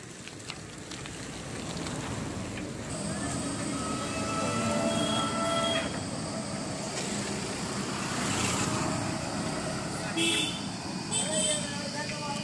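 Road traffic noise that grows louder as it builds up. Partway in, a vehicle horn sounds, one steady tone held for about three seconds. Shorter horn beeps follow near the end.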